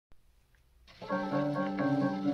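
Storytone electric piano solo played back from a 1940 78 rpm shellac record: a click and faint surface noise, then about a second in the piano begins, with record hiss under the notes.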